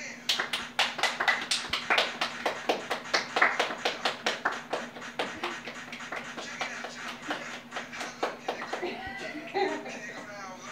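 Rapid, rhythmic hand clapping, about four or five claps a second, tailing off near the end, with voices alongside.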